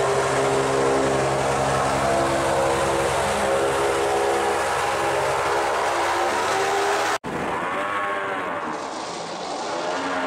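Airboat engine and propeller running steadily at an even speed. It cuts off suddenly about seven seconds in, and an airboat engine is then heard again with its pitch swaying up and down as the boat moves.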